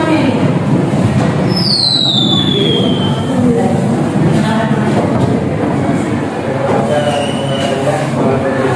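Many students' voices talking over one another in a classroom group discussion. About one and a half seconds in, a high squeal slides down in pitch for about a second and a half, and a shorter high squeal comes near the end.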